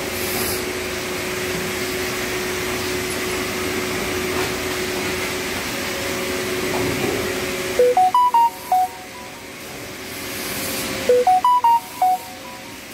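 A steady machine hum in a workshop. About eight seconds in, a short electronic melody of quick beeping notes starts, and it plays again about three seconds later.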